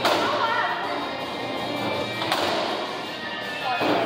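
Bowling-alley thuds: a loud knock at the start, a sharp click a little past halfway and another thud near the end, as bowling balls land on the lanes and strike pins, over the alley's background music.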